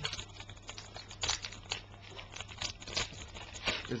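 Baseball cards and their packaging being handled: rustling and crinkling with scattered small clicks.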